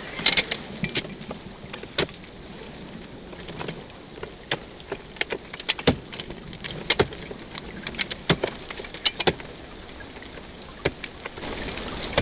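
Steady hiss and patter of water sprayed to simulate rain, with irregular sharp clicks and knocks as a telescoping ladder is pulled out and handled, its sections catching.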